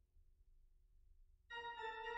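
Near silence, then about one and a half seconds in a Hauptwerk virtual pipe organ (sampled pipe organ played from a multi-manual console) starts a chord abruptly and holds it.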